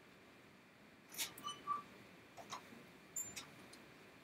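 Handling noise from a headset microphone being fitted on: a few close clicks and rubs, with two short tones about a second in and a thin high squeak near three seconds.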